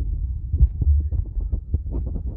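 Loud low rumble with irregular thumps on a phone microphone, with no voices or chanting standing out.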